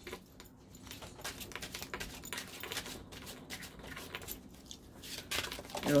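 Deck of cards being shuffled and handled: a quick, irregular patter of light card clicks and flicks.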